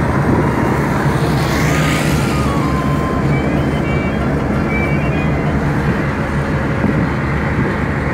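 Steady road and engine noise of a moving car, heard inside the cabin, with a brief rushing swell about two seconds in.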